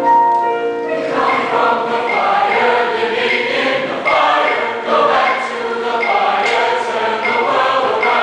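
Piano playing alone, then a mixed choir of men's and women's voices comes in about a second in and sings on.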